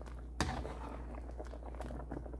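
A plastic spoon stirring cassava chunks in simmering coconut milk in a pan. There is one sharp knock about half a second in, over a steady low hum.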